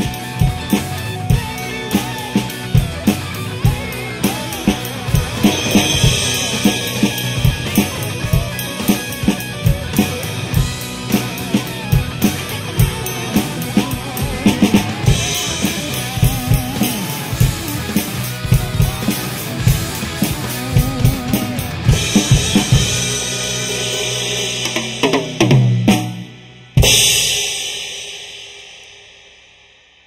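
Acoustic drum kit played along to a rock backing track: a steady kick-and-snare groove with cymbals, building to a closing fill. After a brief break, a final crash-and-kick hit rings out and fades away.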